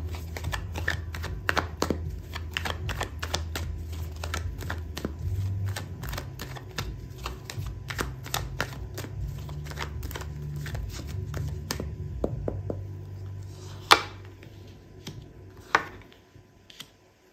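A tarot deck being shuffled by hand: a quick, uneven run of card clicks and flicks for about thirteen seconds, then two sharper snaps near the end as two cards are laid down on the mat.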